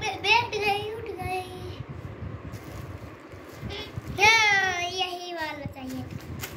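A young child's high-pitched voice: short babbling sounds in the first second, then one long sing-song call from about four seconds in that slowly falls in pitch.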